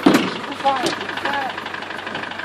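Land Rover Defender engine idling steadily, with a single sharp knock at the very start as someone climbs onto the pickup's metal load bed.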